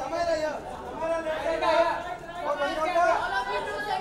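Several people talking at once: overlapping, indistinct crowd chatter.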